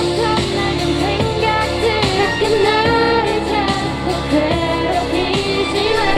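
Pop song sung by young female voices into microphones over a backing track with a steady bass and beat.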